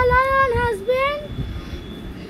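A child's voice making a drawn-out, sing-song sound without words. It is held for about a second, wavering and dipping in pitch, then fades to a quieter background.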